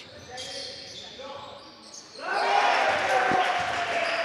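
Indoor basketball game sounds in a gym hall: a basketball bouncing on the hardwood court amid general hall noise, which grows louder about two seconds in.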